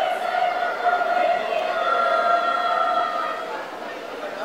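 A mixed group of young voices in unison, reading a piece together and holding one long, steady note from about a second in until shortly before the end.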